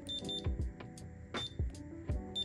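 Short high-pitched electronic beeps from Paradox alarm equipment as REM3 remote buttons are pressed: two quick beeps near the start, then one more about a second later. Background music plays under them.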